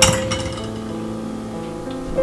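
A glass mug clinks against a wire dish rack as it is set down: one sharp clink at the start and a smaller one just after. Background music plays throughout.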